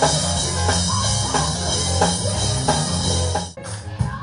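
Gospel band music with drums, bass and guitar playing a driving, steady beat, cut off abruptly about three and a half seconds in.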